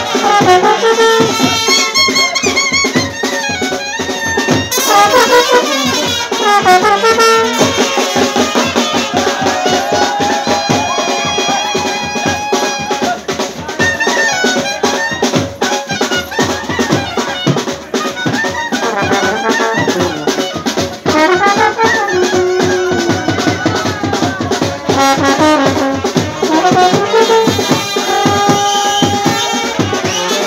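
Indian wedding brass band ('band parti') playing dance music: large brass horns and a clarinet carry the melody over steady drumming.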